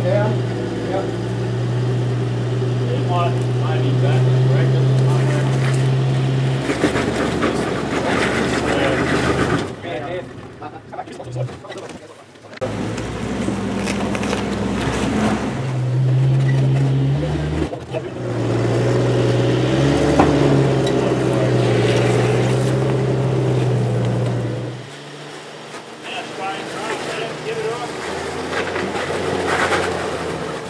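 Jeep Cherokee XJ engine pulling at low revs as it crawls up a rock ledge, the note rising and falling with the throttle. It drops away about ten seconds in, comes back a couple of seconds later, and goes quieter for the last few seconds.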